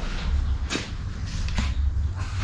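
Footsteps shuffling on a tiled floor, a few soft knocks about a second apart, over a steady low rumble.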